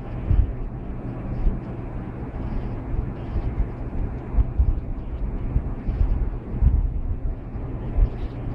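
Low, uneven rumble with irregular soft thumps: handling noise on a handheld camera's microphone while the motherboard is turned and moved about.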